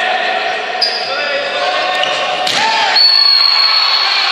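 Futsal players shouting in an echoing sports hall, with a sharp knock about two and a half seconds in and a brief cry after it. From about three seconds in, a long, steady referee's whistle blast stops play for a foul.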